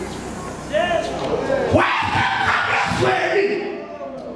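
Only speech: a man preaching animatedly into a handheld microphone, his voice rising in pitch about a second in before a dense, continuous run of speech.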